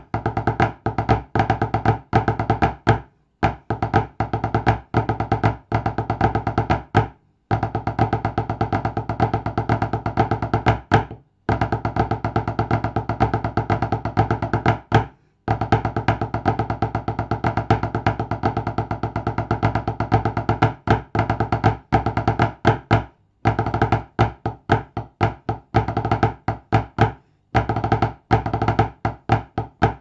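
Wooden drumsticks played fast on a tabletop: a rudimental drum salute of rapid rolls and strokes, broken by short pauses every few seconds.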